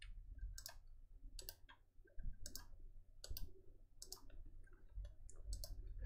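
Computer mouse clicking: a string of faint, irregular clicks while right-clicking links and opening them in new browser tabs.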